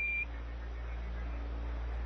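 A short, single-pitched Quindar tone beep right at the start, the tone that marked the end of a Mission Control radio transmission, followed by the steady hiss and low hum of the open radio channel.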